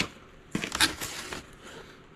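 Small cardboard boxes being handled and shifted against each other: a sharp click, then about a second of rustling and scraping.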